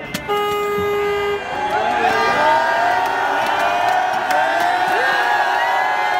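A horn sounds one steady held note for about a second. Then a celebrating crowd cheers, with several horns and shouting voices held and overlapping.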